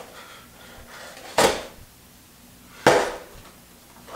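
Two sharp knocks about a second and a half apart, as a handheld tool is jabbed into a small cardboard LEGO box to force it open.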